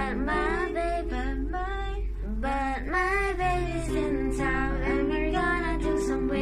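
A young girl singing a slow melody over a backing track of sustained chords.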